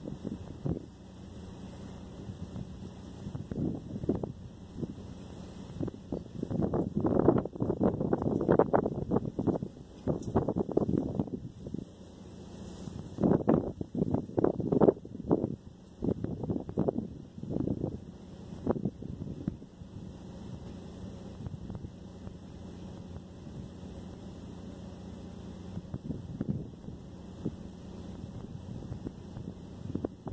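Steady low hum inside a parked car's cabin, with irregular bursts of wind noise on the microphone, the strongest a few seconds in and again around the middle.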